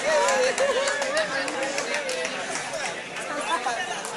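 Several people talking and calling out over one another, with one voice holding a long, wavering call through the first two seconds.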